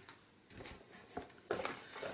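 Faint handling sounds of products being picked out of a bag: a few light clicks and rustles, louder near the end.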